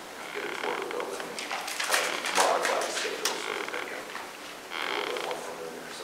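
Indistinct, low voices in a meeting room, with a burst of sharp clicks and rustling about two to three seconds in.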